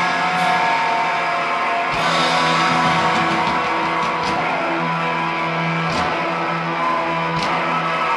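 Live rock band playing loud, amplified electric guitar and bass with long held notes. Sparse drum hits come every second or two.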